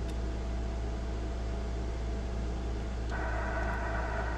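A steady low hum with a faint hiss while the Yaesu FT-891 transceiver restarts after shutting itself off on transmit. About three seconds in, the receiver's hiss comes back up in the radio's speaker.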